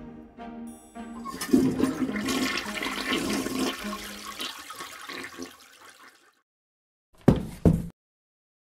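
A toilet flushing: a loud rush of water that starts about a second and a half in and fades away over about five seconds, following a short musical phrase. Near the end come two sharp, loud knocks about half a second apart.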